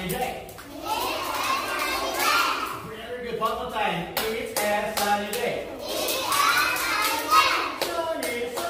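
A group of young children's voices calling out together, mixed with scattered hand claps.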